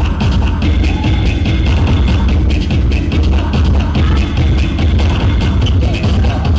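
Loud electronic dance music mixed live by a DJ from turntables and a mixer, with a heavy bass line under a steady, even beat.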